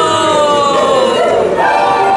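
Loud dark-ride soundtrack: one long held voice-like note slides slowly down in pitch, then a new, higher note comes in about one and a half seconds in.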